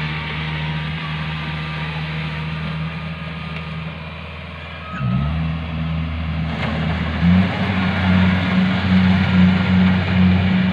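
Kubota combine harvester's diesel engine running steadily. About halfway through its pitch dips, climbs and it grows louder, then steps up again with a pulsing note near the end as the machine works harder.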